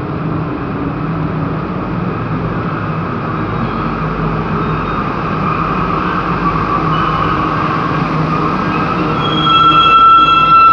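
Santiago Metro NS-16 rubber-tyred train pulling into the station, its rumble growing steadily louder as it approaches. Near the end a high, steady whine sets in and the sound gets louder as the cars draw alongside the platform.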